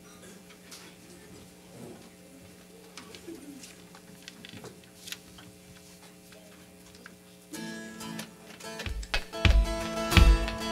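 A quiet sustained instrumental chord held for about seven seconds, with a few faint clicks. A louder chord then comes in, and about a second before the end the worship band starts playing, with strummed acoustic guitar and low beats.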